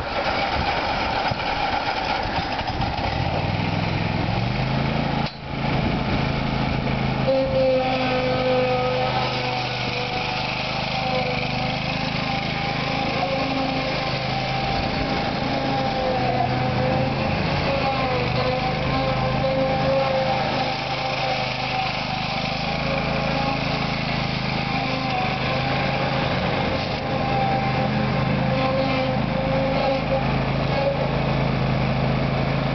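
2004 Exmark Lazer Z zero-turn mower's 27-horsepower Kohler Command Pro V-twin engine running, climbing in pitch as it is throttled up in the first few seconds, with a brief dip about five seconds in. It then runs steadily at speed while the mower drives, with a steady high whine from about seven seconds on.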